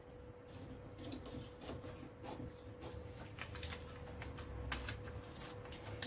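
Scissors cutting through a paper pattern piece: a run of quiet, irregularly spaced snips.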